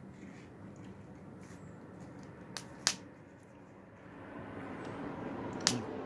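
A few sharp wooden snaps, two of them loud, about three seconds in and near the end, as thin sticks of split shim wood are handled and fed onto a small fire in a foil pan, over a faint steady background.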